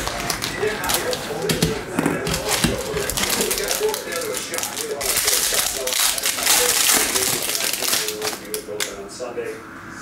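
A foil trading-card pack wrapper crinkling and tearing as it is pulled from the box and ripped open by hand. The crackling comes thickest and loudest in the middle of the stretch.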